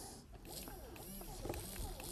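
Faint whirring of a toy robot arm's small gear motors as the arm is driven from its wired remote, the pitch sliding up and down with the moves.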